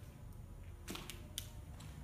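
Footsteps crunching on a debris-strewn concrete floor: a few sharp crackles about a second in and another soon after, over a low rumble.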